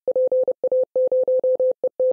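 Morse code: a single mid-pitched beep keyed on and off in a quick run of short and long elements, as in a ham-radio CW signal.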